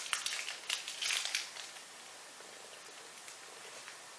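Crinkly candy wrapper rustling in the hands, in a quick run of crackles that stops about a second and a half in.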